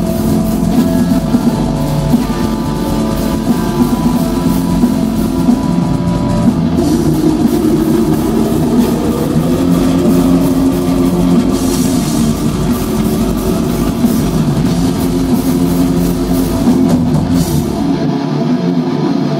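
Metal band playing live and loud: heavily distorted electric guitars, bass guitar and a fast drum kit in a dense, unbroken wall of sound, with a rising pitch slide around the middle.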